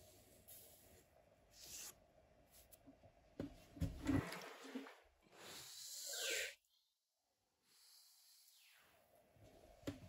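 Faint rubbing of a finger wiping sanding dust off a turtle-shell comb held in a vise, then one breath blown across the comb to clear the dust: a soft hiss that swells for about a second and stops.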